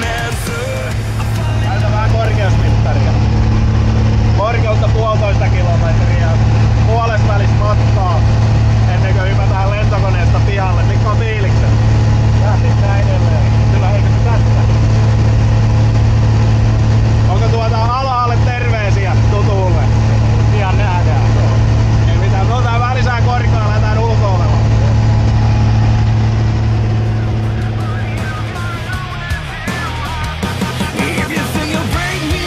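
Piston engine and propeller of a light single-engine high-wing plane droning steadily, heard inside the cabin while it climbs to jump altitude, with voices over it at times. The drone fades near the end.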